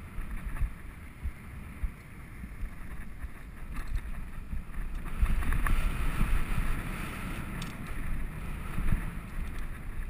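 Wind buffeting a helmet-mounted GoPro's microphone during a mountain-bike ride, over a low rumble with frequent knocks from the bike on the trail. It grows louder about halfway through.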